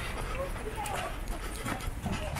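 Footsteps of a crowd of runners and walkers on road pavement, with faint background voices and a steady low rumble of the open road.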